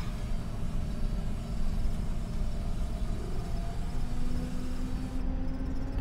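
Twin radial engines of a 1943 Douglas DC-3 idling as it rolls out on a grass strip after landing, a steady low rumble. A faint steady tone joins in about four seconds in.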